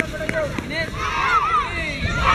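Many children's voices calling out together during a drill, overlapping rather than one speaker, swelling into a loud group call about a second in.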